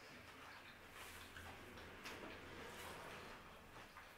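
Faint chewing and crunching of crispy fried onion rings: a few soft crackles over near silence.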